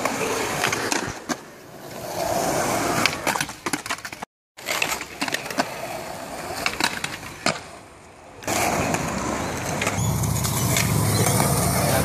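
Skateboard wheels rolling on concrete, with sharp clacks of boards popping and landing as skaters try tricks on a concrete ledge. A brief silent gap comes a little past four seconds in.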